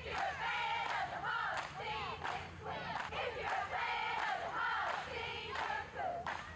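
A squad of cheerleaders shouting a cheer together, many young women's voices in unison, loud and sustained.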